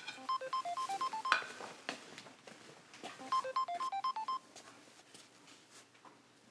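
Mobile phone ringtone: a short tune of quick electronic beeps, played twice about three seconds apart, then it stops.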